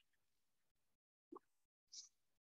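Near silence, broken only by two faint short blips, one about a second and a half in and one at the very end.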